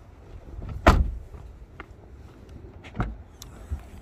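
Suzuki Vitara rear passenger door swung shut, with a loud thud about a second in. Lighter clicks follow, then a second, duller thump near the three-second mark.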